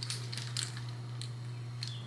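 Scattered light clicks and rustles of hands handling plastic flexi-rod hair rollers and a satin bonnet, over a steady low electrical hum.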